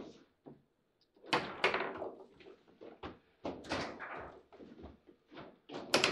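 Table football in play: a quick, irregular run of sharp knocks and clacks as the ball is struck by the plastic player figures and the rods are worked, with the loudest hits a little over a second in and again near the end.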